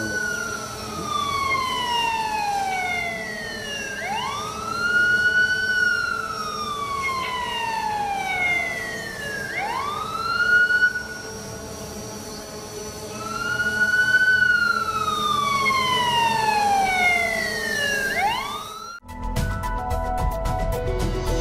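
A wailing siren: each cycle sweeps quickly up and then slowly down in pitch over about four seconds, repeating several times. It is cut off about a second before the end, as a music sting begins.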